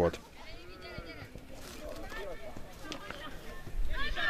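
Faint, high-pitched shouts and calls of voices out on the football pitch, with one drawn-out call about half a second in and scattered weaker calls after it.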